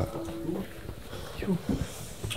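Faint, indistinct voices talking in a room, with short murmured snatches and low room noise between them.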